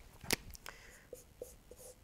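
A marker pen cap clicking off, then a few short, faint squeaks of the marker drawing hatching strokes on a whiteboard.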